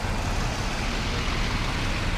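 Road traffic on wet pavement: a steady hiss of tyres on the wet road over a low engine rumble from cars and a van close by.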